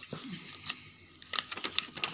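Handling noise: a few light clicks and rattles, several close together near the end, as the phone and pen are moved over the workbook page.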